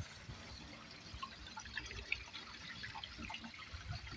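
Faint, scattered drips of water leaking from an overfull holding tank under the trailer, over a faint low rumble.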